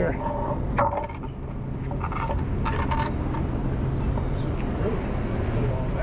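A truck engine idling as a steady low hum, with a few short clanks and knocks in the first three seconds as a tow chain is rigged to an overturned car.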